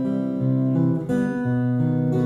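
Acoustic guitar playing sustained, ringing chords, changing chord about a second in.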